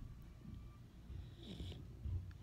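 A sleeping dog's faint snoring breaths, a low uneven rumble.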